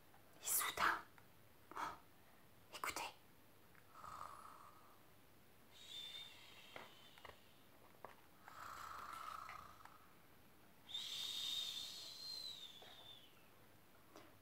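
A woman imitating snoring with her voice, soft and slow: two snores, each a raspy in-breath followed by a higher, whistling out-breath that tails off, after three short breathy sounds at the start.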